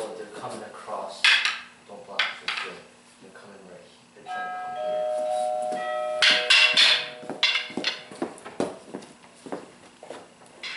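Rattan fighting sticks clacking together in a series of sharp knocks, some close together in pairs. About four seconds in, a short musical tone of two held notes sounds for about two seconds.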